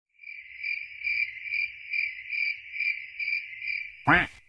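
Crickets chirping, played back as a sound-effect recording: a steady high trill that swells about twice a second, cut off suddenly at the end.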